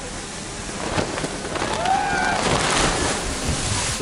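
Rushing wind and water noise that builds over the first couple of seconds as divers drop into the sea, with splashes of their entries and a brief rising-and-falling yell partway through.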